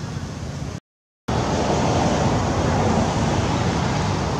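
Steady rushing outdoor background noise. It drops out to silence for about half a second about a second in, then comes back louder.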